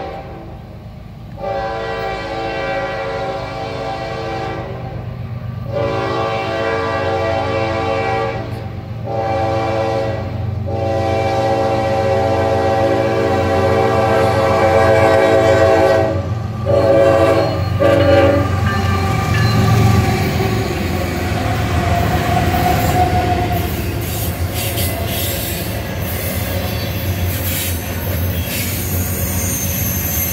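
The lead locomotive of a Norfolk Southern freight train, GE ES44AC NS 8101, sounds its multi-chime air horn in a string of blasts, mostly long with one short one among them, in the pattern of a grade-crossing signal, for about the first 18 seconds. After that the diesel locomotives pass close by, and the double-stack intermodal cars follow, rattling and clicking over the rails with a faint wheel squeal near the end.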